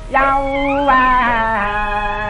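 A Cantonese opera singer on a 1936 New Moon 78 rpm record sings a drawn-out phrase on a held vowel ('憂啊'). The long notes step slowly downward, with the instrumental ensemble behind the voice.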